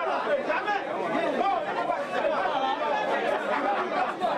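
A crowd of people talking and arguing all at once, many voices overlapping in a continuous heated din: tempers running high, close to a scuffle.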